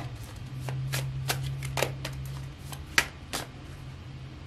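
A deck of tarot cards being shuffled by hand: irregular sharp card snaps and slides, a few each second, thinning out near the end.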